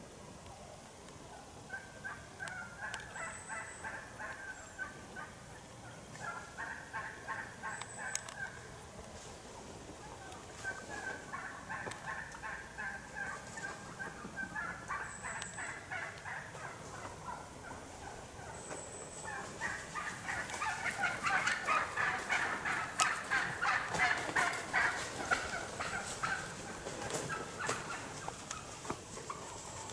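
Birds calling in repeated bursts of rapid, pulsed notes, each burst a couple of seconds long, growing louder and busier in the last third.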